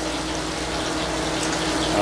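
Heavy rain from a severe thunderstorm, a steady rushing noise with a low hum underneath.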